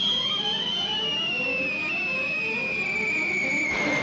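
Cartoon falling-whistle sound effect: one long whistle sliding slowly and steadily down in pitch as a character falls, breaking off right at the end. Orchestral music plays underneath.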